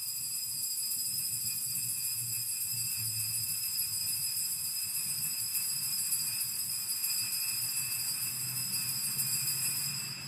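Altar bells (sanctus bells) shaken without a break at the elevation of the chalice, just after the words of consecration. They make a steady, high, shimmering jingle that stops at about ten seconds.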